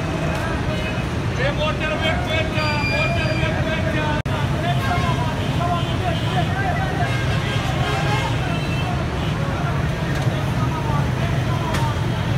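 Men's voices talking, untranscribed, over a steady low rumble of street traffic and idling vehicle engines.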